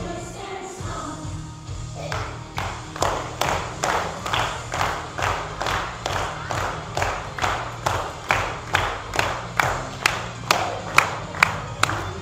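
A group of children clapping together in time, a steady beat of about two or three claps a second that starts about two seconds in, just after singing stops, and gets quicker toward the end. Music carries on quietly underneath.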